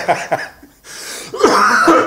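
A man coughing, with a harsh, loud cough about a second and a half in, after a little voice at the start. It is the cough of a man who says he is still not over a bout of flu.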